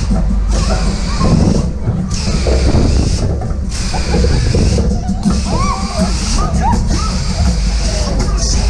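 Loud fairground ride music with heavy bass, heard from on board a swinging Schunkler ride, with riders whooping and shouting over it. A rushing wind noise swells and breaks off about every second and a half as the ride swings.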